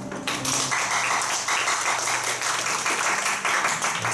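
Audience applauding, starting just after the beginning and continuing throughout.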